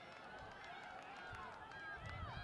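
Several spectators' voices shouting indistinctly and overlapping, cheering on runners in a track race.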